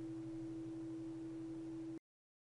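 A steady hum of two low, unchanging tones, which cuts off abruptly at the end.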